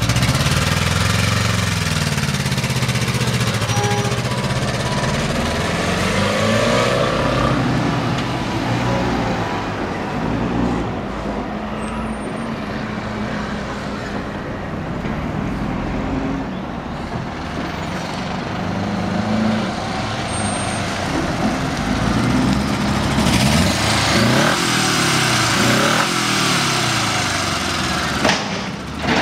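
Honda GL1000 Gold Wing's flat-four engine pulling away, its note rising and falling as it is revved through the gears. The engine is a little quieter in the middle as the bike rides off, then louder again, revving up and down, as it comes back close.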